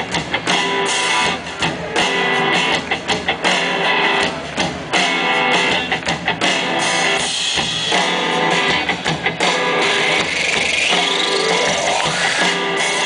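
A live pop-rock band playing an instrumental passage with guitar and drum kit, in choppy stop-start bursts. A rising sweep comes in over the last couple of seconds.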